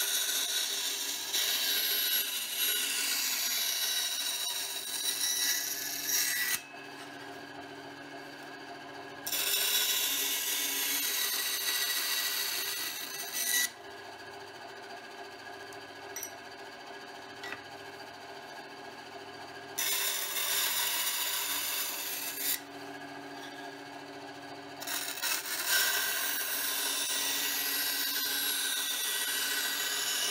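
Ryobi benchtop band saw cutting sheet metal in four separate passes, each a loud, high-pitched hissing rasp. Between passes the saw's motor keeps running with a steady hum.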